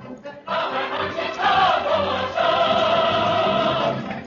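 A chorus of many voices singing, loud and full, coming in about half a second in.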